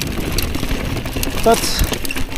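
Mountain bike rolling over a rocky dirt singletrack: steady tyre noise on the dirt and stones, with scattered clicks and rattles from the bike, and wind rumbling on the microphone.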